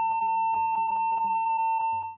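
A computer's built-in PC speaker sounding one continuous, buzzy beep at a single pitch, with rapid clicks about six or seven times a second. It is the sound of a Windows 1.0 system crash, the early blue screen of death.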